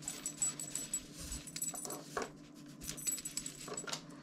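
Paracord being pulled through a metal collar ring: soft rustling of the cord with light, irregular clinks of the metal hardware.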